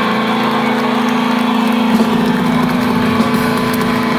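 A single steady note from the band's amplified instruments is held and left ringing at the end of a song over the noise of a large crowd; the note dies away near the end.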